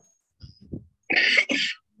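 A person coughs twice in quick succession, two short harsh bursts just over a second in.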